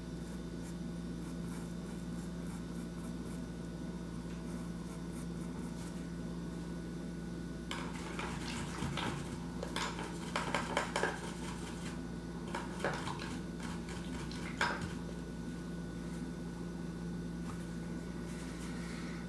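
Light clinking and rattling of small hard objects, in short clusters from about 8 to 15 seconds in, over a steady low electrical hum.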